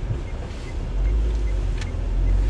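Low, steady rumble of a car heard from inside the cabin, engine and road noise, growing louder about a second in, with a light click near the end.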